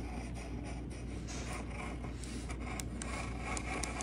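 Graphite pencil scratching and rubbing over tracing paper as a design is traced onto a wood panel, over a low steady hum.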